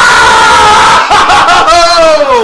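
A man's loud, drawn-out excited yell, held high for about a second, then a second yell that falls in pitch near the end.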